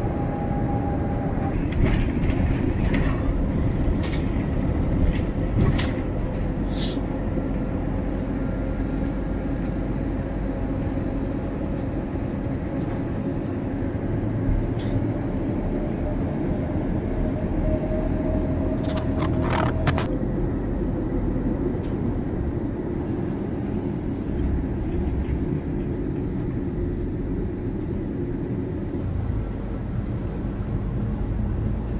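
A moving bus heard from inside the cabin: steady engine and road noise. A few short rattles or clicks come in the first seconds and again about twenty seconds in.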